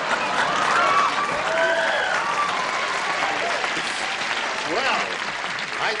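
Studio audience applauding, with laughter and scattered voices over it; the applause eases off slightly toward the end.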